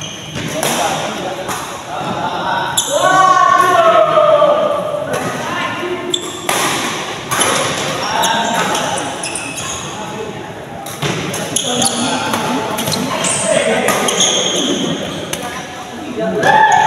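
Badminton rally: sharp racket hits on the shuttlecock at irregular intervals, with players' voices and calls echoing in a large hall.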